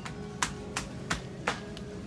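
Background music with a steady beat of sharp clicks, about three a second, over held tones.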